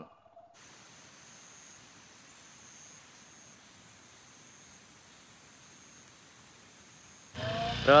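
Faint, steady outdoor background hiss with a thin high whine. Near the end it is cut off by a louder low rumble from an idling motorcycle engine, with a voice.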